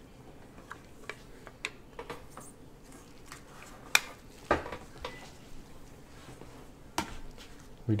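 Scattered light clicks and taps of trading-card boxes and cards being handled on a table, with sharper taps about four, four and a half and seven seconds in.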